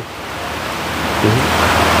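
A steady rushing noise that grows louder over about two seconds, with a low rumble underneath. One short spoken word about a second in.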